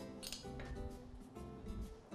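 Background music with held notes, and one short clink of cookware about a quarter second in, as a wooden spoon goes into a pot of tomato sauce.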